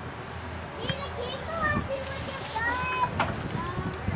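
Distant voices shouting calls across a soccer field, several drawn-out high calls in a row over open-air ambience, with a few sharp knocks in between.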